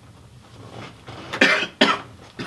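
A man coughing: two short, sharp coughs in quick succession, about a second and a half in.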